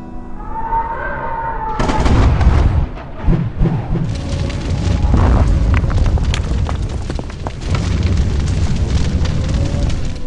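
Lightning strike and explosion sound effect: a sudden crash about two seconds in, then a long rumbling boom with scattered cracks as the building is blown apart.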